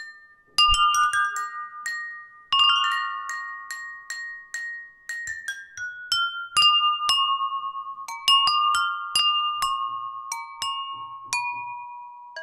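Jal tarang: ceramic bowls tuned with water, struck with thin sticks, playing a melody of clear ringing notes that overlap as they fade. After a brief pause near the start the strokes come in quick runs, quickest in the middle, with the tune drifting lower toward the end.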